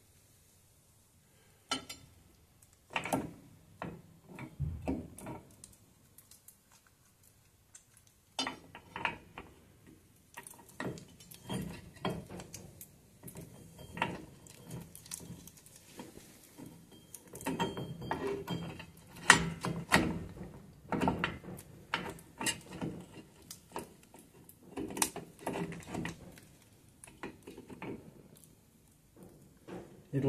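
Irregular metal clinks, knocks and scrapes of a drum-brake wheel cylinder being handled and worked into place against the steel backing plate, as its bleed nipple is lined up with the hole. There are short pauses between bouts of fiddling.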